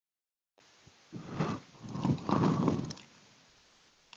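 A recording's microphone audio cutting in from dead silence about half a second in, bringing a faint steady hiss, followed by about two seconds of muffled knocks and rustles close to the microphone while the sound problem is being sorted out.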